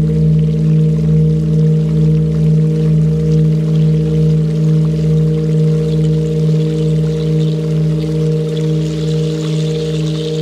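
Meditation music: a steady drone of sustained low tones with a slow, even pulse, over a faint trickle of water that grows a little near the end.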